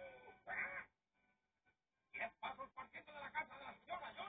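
Audio of a television programme heard through the TV's speaker: a short burst, about a second of silence, then a run of quick, choppy sounds.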